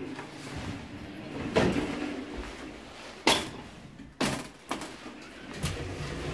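LG Industrial Systems passenger elevator arriving at the landing after a hall call and its doors sliding open, with a series of clunks from the car and door mechanism. No arrival chime sounds, because the chime is broken.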